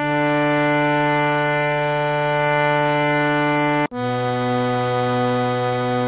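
Harmonium holding two long, steady notes of about four seconds each, separated by a brief break just before four seconds in. The second note is lower: Pa then Ga of Raag Bhoopali's descending scale, with Sa at G.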